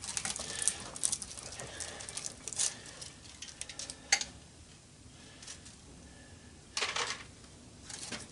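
Clicks and scrapes of copper motor windings being pried and pulled out of an electric motor's steel stator core with a small pry bar. A flurry of small clicks over the first three seconds and a lone click about four seconds in are followed by a short, louder scrape near the end.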